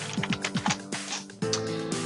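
A few quick computer keyboard keystrokes as a short chat message is typed and sent, over background music.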